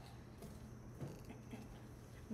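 Quiet room tone with a low hum and two faint, short handling sounds about half a second and a second in, as paper is held in glass jars of water.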